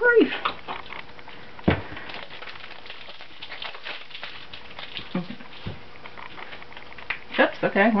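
Small objects being handled on a cluttered tabletop while a boxed deck of playing cards is picked up: scattered light clicks and rustles, with one sharper knock about two seconds in.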